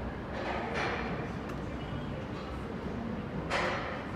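Sliding stainless-steel doors of a ThyssenKrupp passenger elevator closing over a steady background hum, with two short rushing noises: one about a second in and one near the end.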